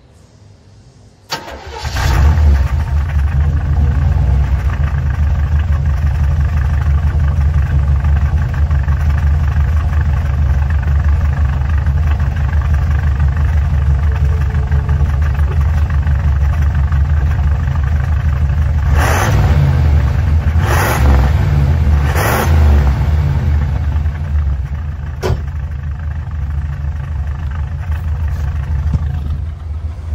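1979 Chevrolet Impala's small-block V8 starting about a second in, then idling steadily with a low rumble through its new exhaust, heard at the tailpipe. Three short louder bursts come about two-thirds of the way through.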